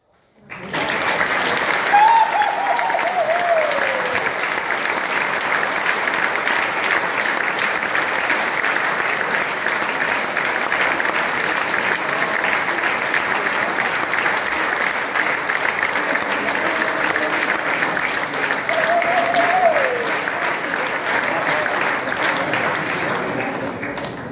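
Hall audience applauding: a dense, steady clapping that starts about a second in, after a moment of quiet. Two falling high calls rise out of the clapping, one about two seconds in and one near the end.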